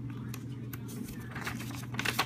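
Paper and plastic packaging rustling and crackling as hands handle a card and the contents of a cardboard box, busier near the end, over a steady low hum.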